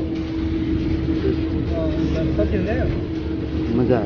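Road and engine noise inside a moving vehicle at highway speed: a steady low rumble with a steady drone over it. Faint voices come through in the background.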